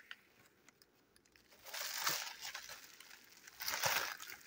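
Plastic bag and bubble wrap crinkling as they are handled, in two rustling bursts, one about two seconds in and one near the end, after a quiet start with a few faint clicks.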